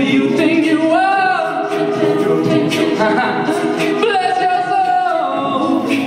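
Mixed-voice a cappella group singing live: backing voices hold chords under a lead voice that swoops up into a long held high note about a second in and again about four seconds in, over a steady beat of vocal percussion.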